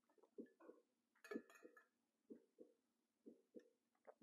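Recorded heartbeat played back faintly over speakers: a steady lub-dub double thump about once a second. A short burst of sharp clicks and rustle, the loudest moment, comes about a second in.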